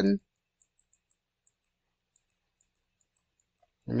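Near silence, with a few very faint, high-pitched clicks of a computer mouse button.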